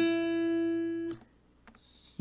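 Steel-string acoustic guitar: one picked note rings for about a second and is then muted. It is one note of a descending melody line picked out on a single string within high-position barre chords.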